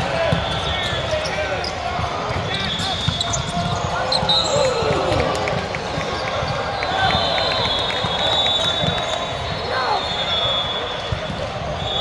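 Volleyball rally on an indoor court: the ball is struck several times by the players as it is passed and hit over the net. Under it runs a steady hubbub of voices, echoing in a large sports hall.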